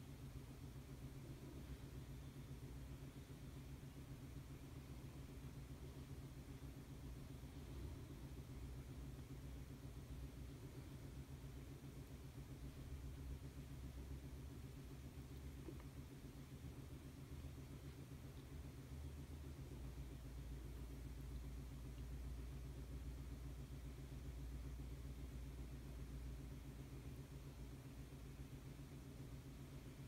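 A faint, steady low hum with light hiss, a little stronger at the very bottom from about twenty seconds in.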